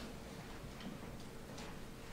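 Faint, irregular light clicks, about three of them spaced roughly half a second apart, over quiet room noise and a faint steady hum.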